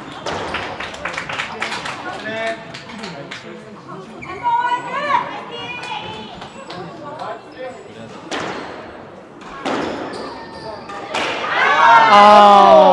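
A squash rally: the ball knocks sharply off rackets and the court walls, in a quick run of hits in the first few seconds and more spread out after. A loud voice cries out with falling pitch near the end.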